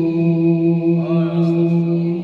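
A male qari reciting the Qur'an in melodic tilawah style into a microphone, holding one long note with wavering ornaments from about a second in.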